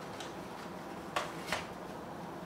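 Two short sharp clicks about a third of a second apart, over a steady low background hiss.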